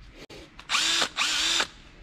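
Snap-on cordless drill triggered twice, two short runs of about half a second each, the motor whine rising as it spins up and falling as it stops. A small click comes just before the first run.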